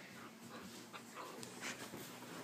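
A puppy making a few short, faint vocal sounds while it tugs at a sock in play.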